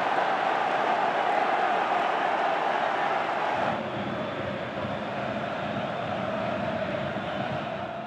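Football stadium crowd noise: a steady din of many voices with no single sound standing out. It drops slightly and changes character about four seconds in.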